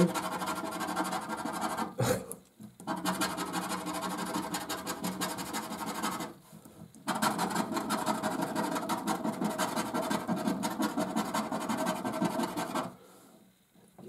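Rapid rasping scratching as the silver coating is scraped off a £5 '20X Cash' scratchcard, in three bouts with short breaks about two and six seconds in, stopping near the end.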